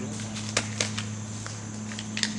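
Steady low hum with a few faint short clicks.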